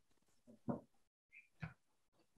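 A few short, faint breathy sounds of a person's stifled laughter, separated by near silence.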